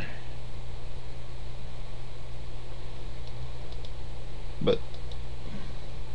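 A steady low electrical hum, with a few faint computer-keyboard clicks as a web address is typed.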